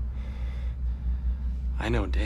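A deep, steady hum pulsing slightly throughout, and near the end a man's short gasp.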